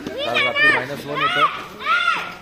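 A young child's high-pitched voice calling out in three short cries, each rising and falling in pitch.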